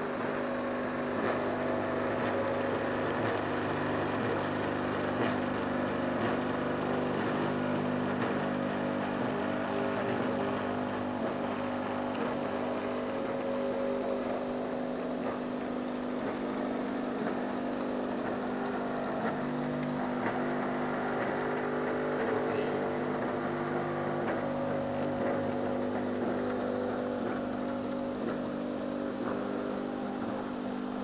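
Laboratory roll-to-roll coater running during slot-die coating: its roller drive motors hum steadily, several steady tones at once, with faint scattered ticks.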